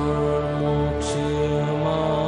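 Devotional Hindu mantra chant set to music: long held sung notes over a steady drone, with a brief hiss about a second in.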